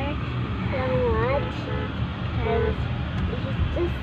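Low, steady rumble of engine and road noise inside a moving car's cabin, with short bits of a child's voice over it.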